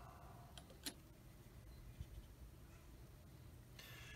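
Near silence with a few faint light clicks, the sharpest just under a second in: the plastic brush cap of a glass bottle of Tamiya Extra Thin Cement being set back on the bottle.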